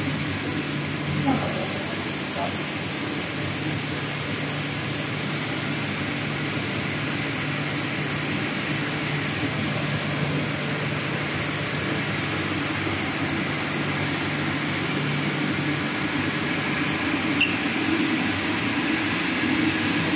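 Electrodynamic vibration shaker table running a 75 g shaking test on a thermal weapon sight camera: a steady rushing noise with a low hum, the hum stopping a few seconds before the end.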